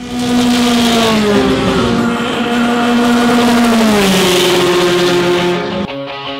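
Formula 3 race car engine running at high revs. Its pitch holds, then drops in steps about a second and a half in and again about four seconds in.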